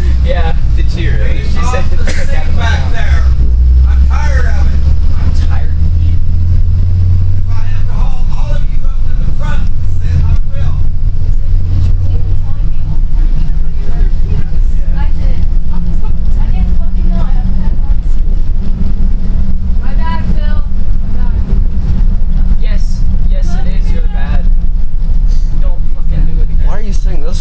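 Bus engine and road rumble heard from inside the passenger cabin, a loud steady low drone, with passengers' voices chattering over it on and off.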